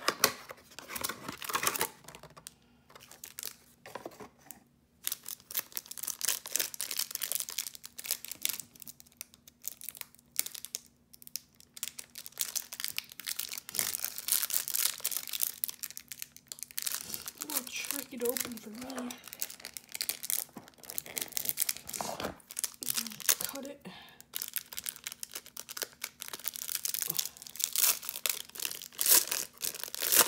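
A cardboard trading-card box torn open by hand and the clear plastic wrapping around the cards crinkled and pulled apart, giving an irregular run of crackling rustles and tearing.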